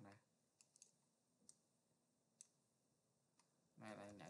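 Faint computer mouse clicks, about six single sharp clicks spread irregularly over a near-silent background.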